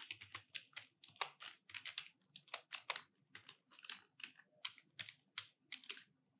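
Computer keyboard being typed on: quick, irregular key clicks, several a second, faint.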